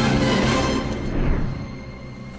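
Film soundtrack music, loud and dense at first, then dropping away about a second and a half in to quieter held notes.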